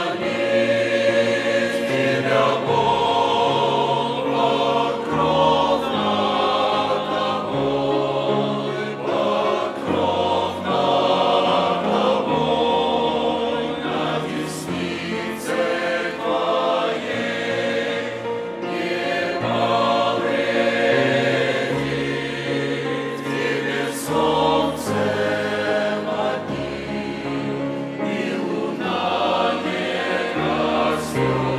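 Mixed church choir of men and women singing a hymn in Russian. The choir comes in at full voice right at the start and sings on steadily throughout.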